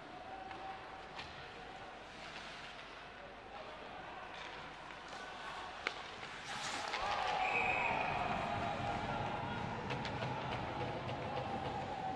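Ice hockey rink sound: stick and puck knocks over arena noise, then a sharp crack of a shot about six seconds in. After the shot, shouting and cheering grow louder as a goal is celebrated.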